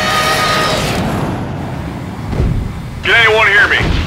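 A music cue ends about a second in, leaving a steady jet-engine rumble, cartoon sound effect for fighter jets in flight; about three seconds in a man begins speaking, his voice thin as if over a radio.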